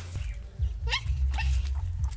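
A dog giving a short rising whine about a second in, with a fainter call just after, over a steady low rumble.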